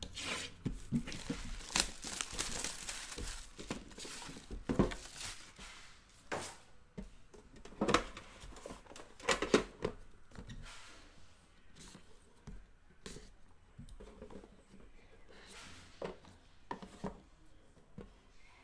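Plastic shrink-wrap being torn off a sealed trading-card box and crinkled, densest in the first few seconds. This is followed by scattered knocks and taps as cardboard boxes are handled and set down.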